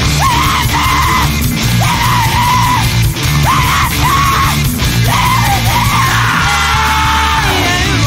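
Chaotic emo (screamo) band recording: screamed vocals in short, repeated phrases over distorted electric guitars and a heavy bass end, with a longer held note near the end.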